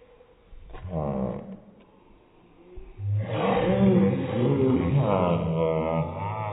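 A girl's wordless vocal sound: a short wavering cry about a second in, then a louder, drawn-out one from about halfway through, rising and falling in pitch like a playful animal-like wail.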